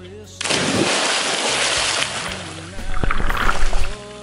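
A person plunging into a lake: a sudden splash about half a second in, then a loud rush of water for a couple of seconds. Near the end comes rougher churning and splashing as the swimmer thrashes at the surface, heard close to the water.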